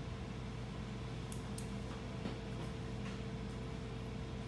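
A steady low mechanical hum with a faint constant tone, with a few faint clicks in the first half.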